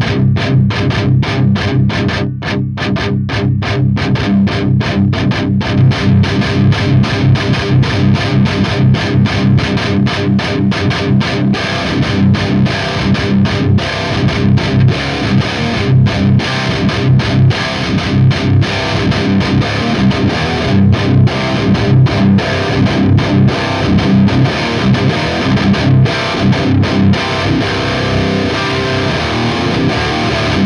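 Distorted electric guitar on the crunch channel of a KSR Ceres preamp/distortion pedal, running into a Seymour Duncan PowerStage 170 power amp and a miked guitar cabinet. It is played as loud, fast staccato riffing with many short stops between chugs.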